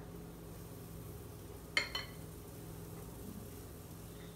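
Quiet kitchen room tone with a low steady hum, and one sharp clink of a metal spoon against the dishes a little under two seconds in, followed by a lighter tap, as waffle batter is spooned from a glass mixing bowl into the waffle bowl maker.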